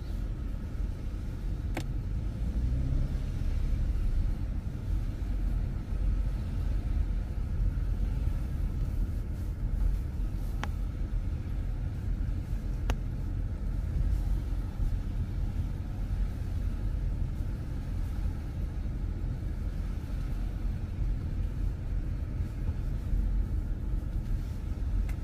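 A car driving slowly, heard from inside the cabin: a steady low rumble of engine and tyres on the road, with a few faint clicks.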